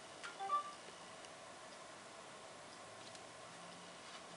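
A Samsung Galaxy S4 gives a short electronic chime of a few quick tones at different pitches, just after a light click about half a second in: the phone reading an NFC tag through its case.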